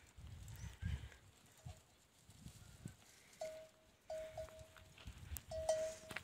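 Camels feeding on a fence of dry thorn brush: faint, scattered low crunching and rustling. From about halfway in come a few short, clear notes at a single steady pitch.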